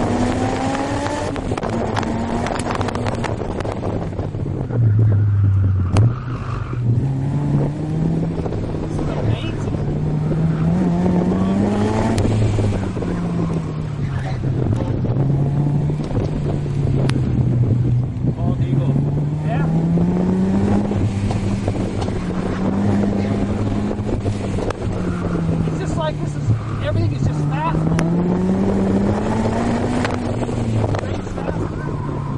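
Honda S2000's inline-four VTEC engine heard from inside the open-top cockpit at track pace, its revs climbing hard and dropping back again and again as the car accelerates out of corners and slows for the next. Wind rushes through the open cabin.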